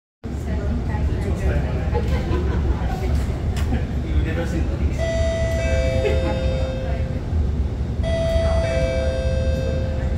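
Steady low hum inside an SMRT R151 train carriage. A descending two-note announcement chime sounds twice, about five and eight seconds in: the signal that an onboard passenger announcement is about to play.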